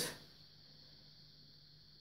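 Near silence: faint steady room tone with a low hum, after a spoken word fades out at the very start.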